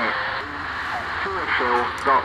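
Portable receiver's speaker playing a 160-metre AM signal from a homebrew low-power Pixie transmitter: a recorded voice message comes through over steady hiss and static. A low hum joins about half a second in, and the voice picks up again in the second half.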